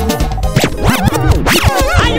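DJ scratching over the music, heard as fast up-and-down sweeps in pitch about every half second, bridging from one song into the next in a nonstop Ateso gospel mix.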